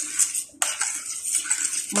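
Metal spoon stirring tapioca pearls in syrup in a stainless steel pot, scraping and clinking against the pot in quick repeated strokes, with a brief pause about half a second in.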